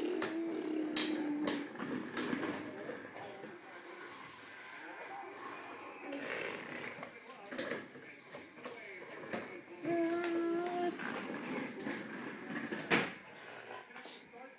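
A young child's drawn-out wordless vocal sounds, one at the start and another about ten seconds in, with scattered knocks and clatter in between and a sharp knock near the end.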